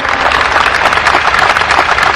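A large audience applauding: a dense, even clatter of many hands clapping at once.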